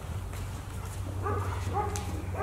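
A dog whining in short, high yips, about two a second, starting about a second in.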